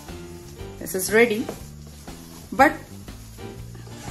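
Background music with steady low held notes. A voice sounds briefly twice, about a second in and again at about two and a half seconds.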